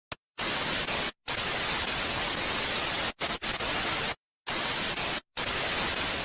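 Television static: a steady, loud hiss of white noise, broken by several brief silent gaps.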